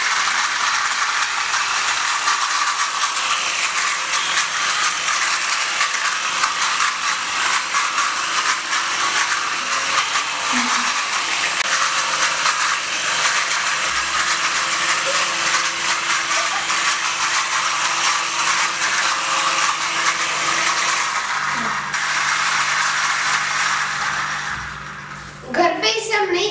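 Small remote-control toy helicopter's electric rotor motor whirring steadily as it lifts off and flies. The whir dies away shortly before the end as it lands.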